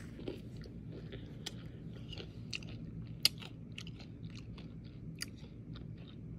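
Close-up chewing of a granola-topped smoothie bowl: soft, irregular crunches and wet mouth clicks, with one sharper click a little after three seconds.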